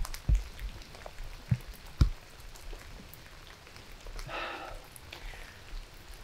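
A quiet pause with faint hiss, broken by a few scattered light clicks and knocks, most of them in the first two seconds, and a faint, brief murmur about four seconds in.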